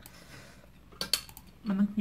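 A metal fork clinking a few times against a ceramic plate about a second in, picking at fish on the plate.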